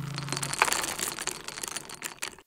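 Sound effect of a shower of small hard candies tumbling and clattering: a dense rattle of many tiny clicks that fades away toward the end.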